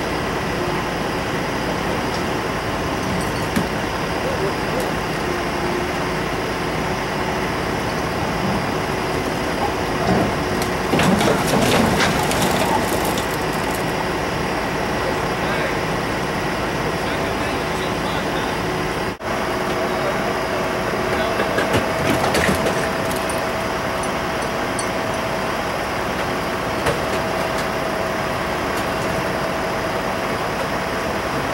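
Steady outdoor street and traffic noise with a constant engine hum, and faint voices about ten seconds in. The sound drops out briefly about two-thirds of the way through and comes back with a hum at a different pitch.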